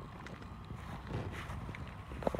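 Quiet footsteps and rustling on dry grass and fallen leaves, a few soft irregular steps, over a faint steady low rumble.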